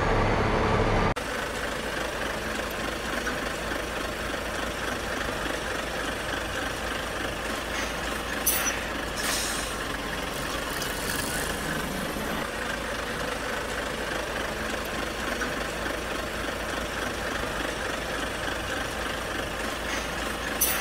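A heavy truck's diesel engine idling steadily, with a few short hisses partway through.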